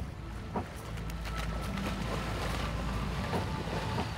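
Wind rumbling on the microphone over lake water, with a steady low noise and a few faint splashes as someone wades into the shallows.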